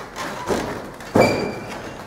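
Thuds of wrestlers working on the ring: a lighter knock about half a second in, then a loud thud just over a second in with a brief ringing tone after it.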